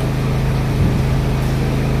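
A steady low mechanical hum over a constant hiss, running unchanged throughout.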